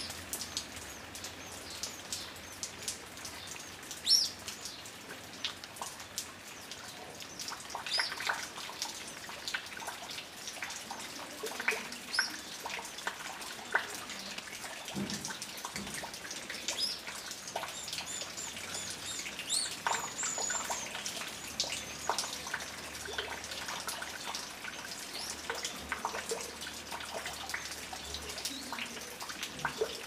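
Birds chirping: short, scattered calls throughout, with one sharper, louder chirp about four seconds in.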